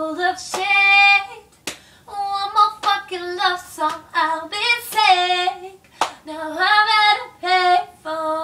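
A woman singing unaccompanied, with held notes that slide in pitch, and a sharp slap about once a second under the voice.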